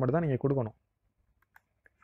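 A man's voice speaks briefly, then stops. A few faint computer mouse clicks follow near the end, opening a drop-down menu.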